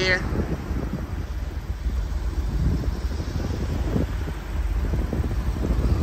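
Wind buffeting the microphone over a steady low rumble from the idling 6.1-litre Hemi V8 of a 2010 Jeep Grand Cherokee SRT8.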